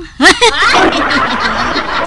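Several people laughing together, snickering and chuckling over one another, starting with a loud burst about a quarter second in.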